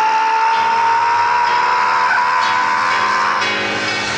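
A man singing one long, high note into a microphone, slid up into and held for about three and a half seconds before breaking off, over live worship backing music.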